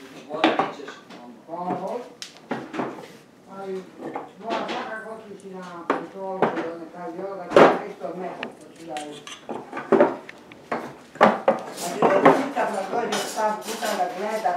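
Small wooden doll-house furniture pieces clacking and knocking against the wooden doll house as they are handled, in a string of irregular sharp knocks with the sharpest about halfway through. A voice makes wordless sounds between the knocks.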